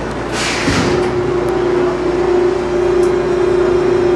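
Hawker Siddeley H5 subway car starting to pull out of a station: a brief hiss about half a second in, then a steady hum sets in over the rumble of the car getting under way.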